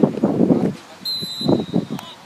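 Voices calling out on a football pitch; about a second in, a referee's whistle is blown once, a steady high tone held for about a second.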